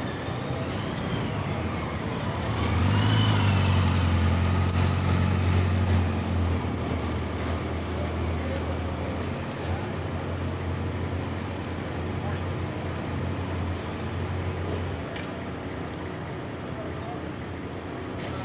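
A motor vehicle engine running steadily at low revs, swelling louder a few seconds in and dropping away about fifteen seconds in, over street noise.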